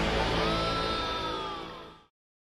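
Closing theme music ending on a held chord that fades steadily away, dying out right at the end.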